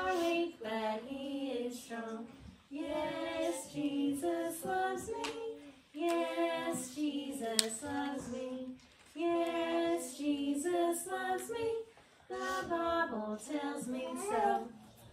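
A small group of children singing a song together without accompaniment, in phrases of a couple of seconds with short breaks between them.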